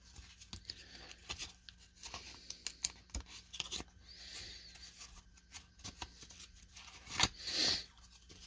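Quiet handling of a stack of 1994 Topps baseball cards: cards slid off the pack and flipped over one another, with light clicks and scratchy rustles of cardstock. A louder swish comes about seven seconds in.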